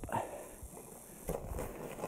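Faint crunching and scuffing in snow as a toddler crawls uphill pushing a plastic sled, with a couple of soft clicks.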